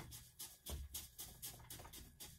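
Wooden stick poking and scraping in wet biochar in a plastic bucket: faint, soft taps and scrapes, a few a second.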